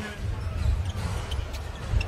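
Basketball bouncing on a hardwood court over the low rumble of the arena.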